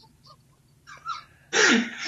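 A short hush, then a man bursts out laughing about one and a half seconds in.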